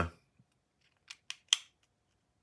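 Small screwdriver working a screw in a titanium-handled folding knife, giving three short, sharp metallic clicks in quick succession about a second in, the last the loudest. The screw's head may be damaged.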